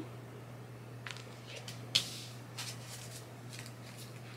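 Faint handling of a deck of oracle cards: soft rustles and light taps, with one sharper click about two seconds in, over a low steady hum.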